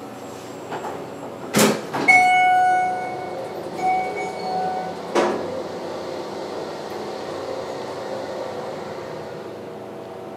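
Inside a Schindler hydraulic elevator: a knock, then an electronic chime rings out and fades, and a shorter second chime follows. About five seconds in the door thuds shut, and a steady hum starts as the hydraulic pump runs and the car begins to rise.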